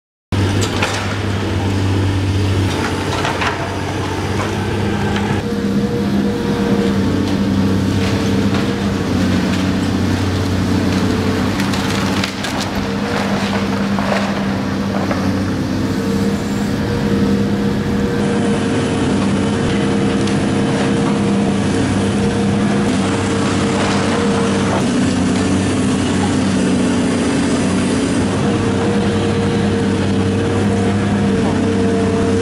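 Demolition excavator's diesel engine running steadily, with crunching and cracking of broken timber and masonry as the grab works the rubble, the crunches mostly in the first half.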